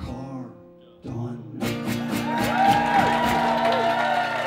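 Final strummed acoustic guitar chords and a last sung note end a folk song. Then, about one and a half seconds in, an audience starts applauding and cheering, with whoops.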